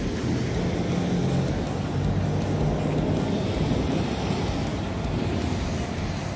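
A vehicle driving slowly: a steady engine hum under tyre and road noise on asphalt.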